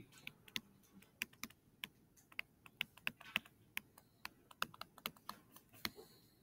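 Faint, irregular quick clicks and taps of a stylus on a tablet screen while handwriting an equation.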